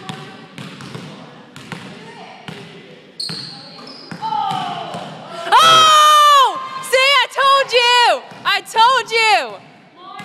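A basketball bouncing on a hardwood gym floor, then, about five and a half seconds in, a long high-pitched shriek followed by several shorter excited squeals, a cheer for a made shot.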